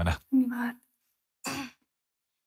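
A man's voice finishing a sentence, followed by a short vocal sound with a steady pitch and a brief breathy burst, then silence for the last moment.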